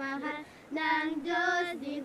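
Kalinga traditional singing from a Philippine field recording: a high voice holding long, steady notes. It breaks off briefly about half a second in, then steps up in pitch and comes back down near the end.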